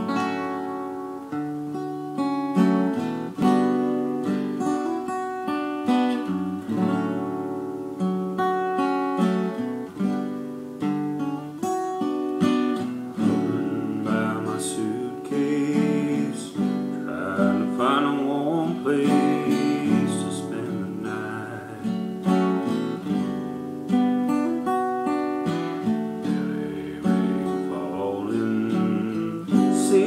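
Acoustic guitar playing a slow instrumental intro, chords struck and left to ring about once a second.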